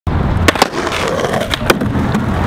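Skateboard wheels rolling on stone paving, with two pairs of sharp clacks from the board striking the ground, about half a second in and again near the end.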